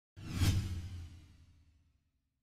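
A whoosh sound effect that swells into a sharp hit about half a second in, then a low boom that fades out over about a second and a half.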